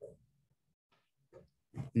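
Mostly near silence, with a brief voice sound right at the start and a man starting to speak near the end.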